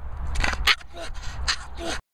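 A person's indistinct voice in short fragments, with short hissing sounds, over a steady low rumble.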